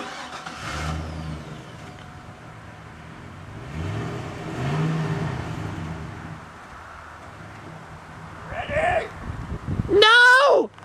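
Car engine revving: a short rev about a second in, then a longer rise and fall in pitch around the middle.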